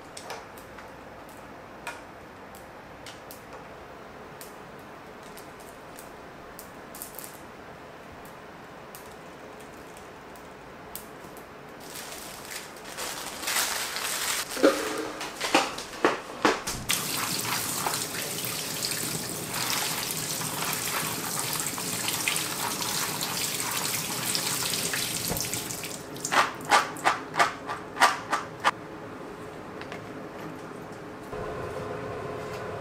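Faint picking clicks while soybean sprouts are trimmed by hand, then a kitchen tap running into a sink for about fourteen seconds as the sprouts are rinsed, with a few knocks in it. After the water stops, a quick run of about eight sharp knocks.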